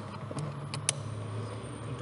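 A few sharp plastic clicks as a flat tool pries at the latch of the wiring-harness connector behind a car's instrument cluster. The loudest click comes just under a second in.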